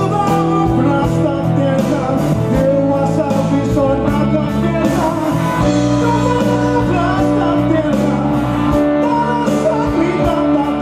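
Live band playing a toast song with a steady beat, electric guitar and bass, and a male singer singing into a microphone.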